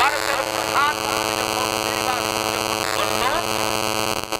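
A man's preaching voice, amplified through microphones and a public-address system, with a loud steady electrical mains hum running under it.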